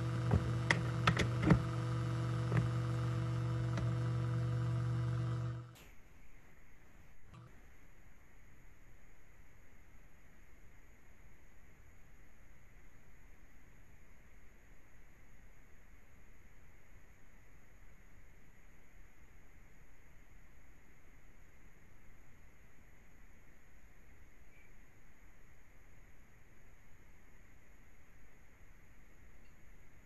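Steady electrical buzz from an open microphone on a video call, with several sharp clicks over it, cutting off suddenly about six seconds in. After that there is only faint hiss with a faint high whine.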